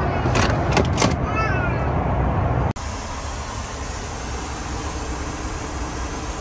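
Steady low rumble of a Boeing 737-8 airliner's cabin in flight, with a few sharp clatters in the first second as the seat's tray table is folded and stowed. About two and a half seconds in it cuts to a quieter, steady hiss of the cabin air noise.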